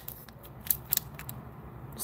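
Foil trading-card pack being handled, giving a few faint, sharp crinkles and clicks of the wrapper.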